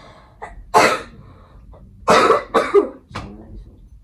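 A person coughing: one cough about a second in, then three coughs in quick succession.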